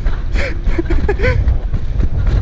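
Wind buffeting the camera microphone of a moving bicycle rider, a steady low rumble with short bits of voice or laughter over it.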